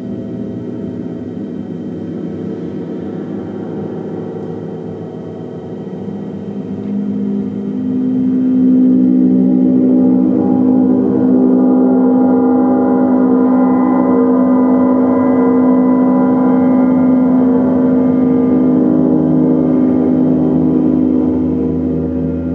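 Large hanging gong played continuously with a mallet, giving a dense wash of many overlapping tones that ring on. It swells louder from about six seconds in and holds at full volume, and a deeper tone comes in near the end.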